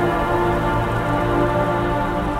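Dark ambient music: synthesizer drones holding a dense, unchanging chord over a steady low rumble, mixed with a grainy industrial-ambience noise layer.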